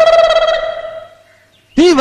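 A long held note at one steady pitch, rich in overtones, that fades away over the first second and a half. A man's voice begins speaking just before the end.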